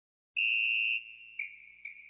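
A high electronic beep held for about half a second, then repeating more quietly about every half second, like an echo.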